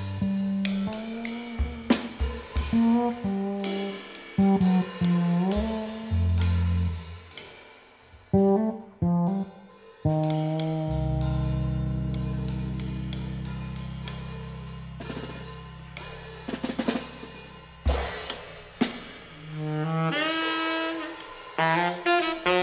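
Free-improvised jazz played on electric bass and drum kit: plucked bass lines with snare, rimshot, bass-drum and cymbal hits, and one long held bass note fading over several seconds midway. A saxophone comes in near the end.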